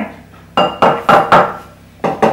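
An egg tapped against the rim of a ceramic mixing bowl to crack it: four sharp clinking knocks about a third of a second apart, with another at the very end.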